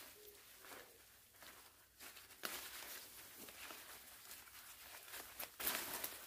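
Leaves, stems and tall grass rustling and tearing as tangled weeds and vines are pulled down by hand, in irregular bursts, the loudest about two and a half seconds in and near the end.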